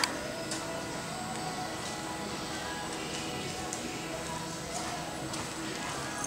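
Indoor arena ambience of background music and voices, with a horse's faint hoofbeats on the arena footing. A single sharp knock comes right at the start.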